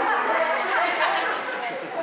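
Speech only: a man preaching into a microphone.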